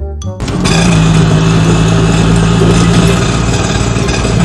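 Small engine of a three-wheeled auto rickshaw running steadily, as a cartoon sound effect, starting about half a second in and staying loud and even.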